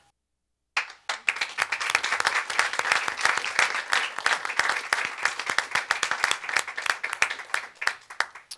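A small seated audience applauding, many hands clapping together; it starts just under a second in, after a moment of silence, and thins out near the end.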